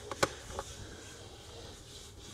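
A sharp plastic click about a quarter of a second in, then a fainter tick, as the oil filler cap is twisted off a Vauxhall Ecotec engine's cam cover. Otherwise only a faint background hiss.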